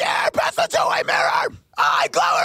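Harsh screamed metal vocal track played back through a compressor, in loud phrases broken by short gaps. The compressor setting makes it sound less aggressive to the mixer.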